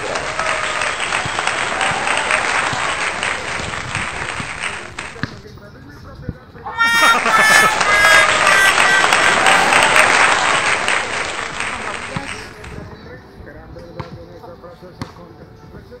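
Two edited-in comedy sound clips, each about five seconds long: laughter with applause first, then a second clip with music and laughter. Quieter court sounds come between them and after.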